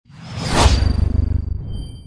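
Whoosh sound effect of an animated logo reveal, swelling to a peak about half a second in over a deep low rumble, then fading away.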